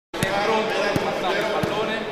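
Basketballs bouncing on a gym floor, three bounces about two-thirds of a second apart, over voices talking.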